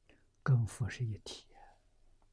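A man's voice speaking one short phrase in Mandarin Chinese about half a second in, between pauses.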